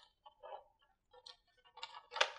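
Near silence broken by a few faint, short clicks and rustles as a large paper sheet is handled and carried.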